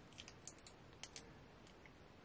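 Near silence with about half a dozen faint, light clicks from a small plastic concealer tube being handled.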